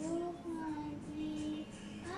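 A young boy singing along to a karaoke backing track, holding long sung notes with gliding pitch changes over the music.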